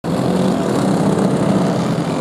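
Small racing-kart engines running steadily, their pitch wavering slightly.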